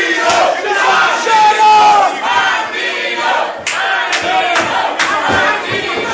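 Small wrestling crowd yelling and shouting over one another. About halfway through, a quick run of about five sharp smacks sounds over the shouting.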